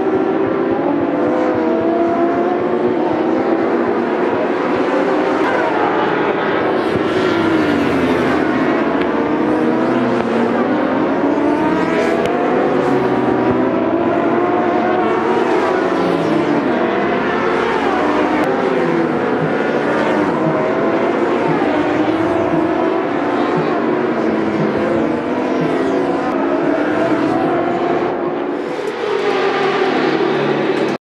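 Endurance racing motorcycles at speed on track, engines revving high with pitch climbing and dropping repeatedly through gear changes as bikes pass one after another.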